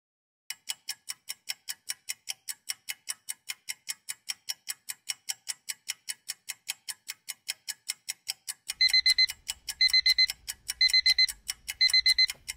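Countdown timer sound effect: a clock ticking quickly, about four ticks a second. In the last few seconds, short runs of high alarm-clock beeps sound about once a second, signalling that time is running out.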